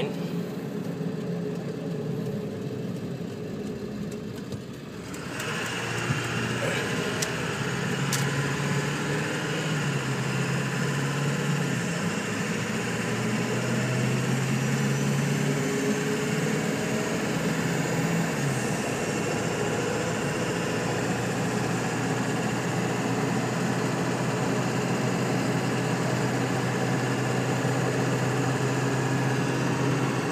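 1999 Ford F-350's 7.3-litre Powerstroke turbo-diesel V8 heard from inside the cab while driving, a steady engine drone under road noise. The cab noise grows louder about five seconds in as the truck speeds up, and the engine note drops in pitch once, about two-thirds of the way through, as the automatic gearbox upshifts.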